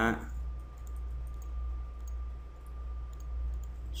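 Faint computer mouse clicks as the preview is hidden and shown again in the software, over a steady low hum.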